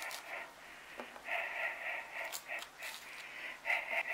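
A person breathing close to the microphone in short, irregular puffs, with a couple of faint clicks.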